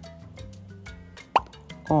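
Light background music, with a single short rising "plop" sound effect about one and a half seconds in as a wooden puzzle piece is set into its slot in the board.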